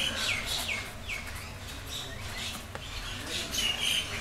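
Small birds chirping in the background: a run of short, falling chirps in the first second, then more again near the end.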